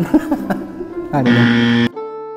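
Game-show style 'wrong answer' buzzer sound effect over background music: a loud, steady, buzzy tone lasting under a second that cuts off abruptly. It marks the guess of rambutan as wrong.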